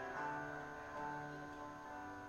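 Slow, soft piano music: sustained chords, with a new chord entering just after the start and another about a second in, the sound then fading gradually.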